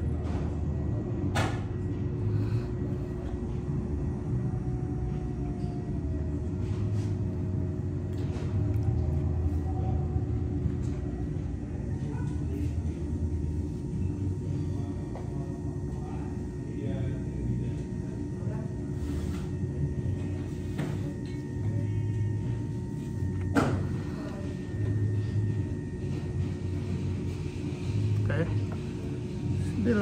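Electric pottery wheel running with a steady low hum while wet clay is worked by hand on it. A few sharp clicks come through, the loudest about three-quarters of the way in.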